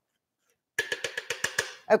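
A quick run of sharp plastic clicks, about eight a second, lasting about a second and starting near the middle: a food processor's bowl and lid being handled and clicked into place.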